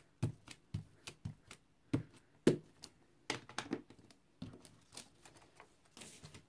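Small VersaMark ink pad dabbed again and again onto a plastic stencil over a card tag: a string of light, irregular taps, about two or three a second, a couple of them louder about two seconds in.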